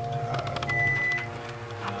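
Moving elevator car with a steady hum, and a short high-pitched beep a little under a second in.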